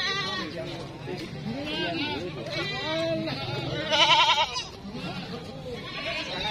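Goats bleating several times, each bleat quavering in pitch, the loudest about four seconds in.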